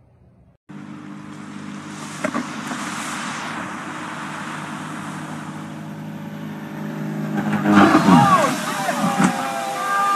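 Small single-engine propeller plane's engine running steadily as it moves through shallow water, its note stopping about eight seconds in as the plane noses over into the water. People shout and cry out in the loudest moments near the end.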